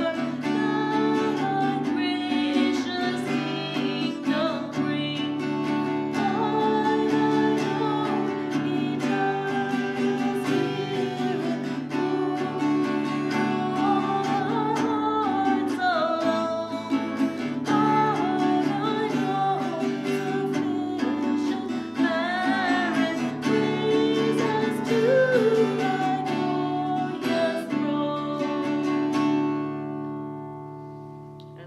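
A woman singing to her own strummed acoustic guitar; the music dies away at the very end.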